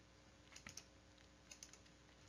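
A few faint clicks of computer keys against near silence.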